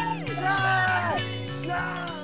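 Background music: a guitar track over a stepping bass line, with sliding notes, slowly getting quieter toward the end.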